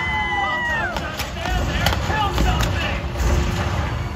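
A long held shout at the start, then three sharp cracks about two-thirds of a second apart, like blank-gun stunt gunfire, over the low running of a jet ski engine.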